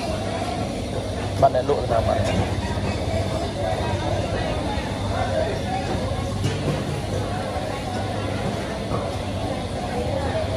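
Busy market ambience: vendors and shoppers talking in the background over a steady low hum, with a brief knock about a second and a half in.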